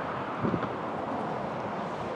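Steady outdoor background noise: wind buffeting the microphone over a faint distant traffic hum, with a brief faint low sound about half a second in.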